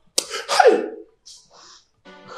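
A man's short, forceful vocal outburst that falls in pitch, followed by a faint breathy hiss.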